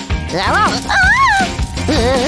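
A cartoon character's wordless vocal yelps, two swooping rising-and-falling calls, over background music.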